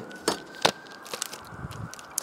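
Two light clicks in the first second, then softer handling noises, as a plastic pack of Parma ham is picked up and set down on a wooden chopping board. A faint steady high whine runs underneath.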